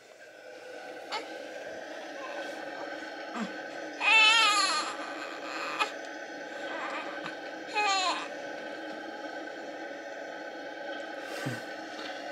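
SNOO smart bassinet switched on: its built-in white noise fades in over the first couple of seconds and then runs steadily. A newborn cries out loudly once about four seconds in, and briefly again near eight seconds.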